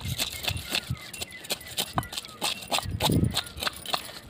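A large knife blade scraping scales off a rohu fish against a concrete floor: quick, irregular scrapes and clicks, several a second.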